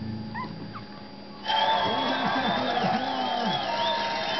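Three-week-old Lhasa Apso puppies giving a few faint squeaky whimpers while nursing, then about a second and a half in, louder television sound with music comes in over them.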